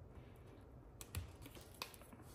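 Faint handling noise of fingers on a foam pad and the plastic rim of a lamp base as the adhesive pad is pressed on, with a few light clicks in the second half.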